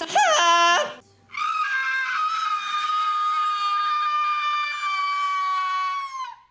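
A brief loud vocal cry that slides up and down in pitch, then a person holding one long, high-pitched scream for about five seconds that cuts off near the end.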